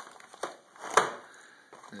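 Paperboard cookie box being pried open at the top by hand, with the flap coming open: a small snap about half a second in, then a louder sharp crack about a second in, over faint cardboard rustling.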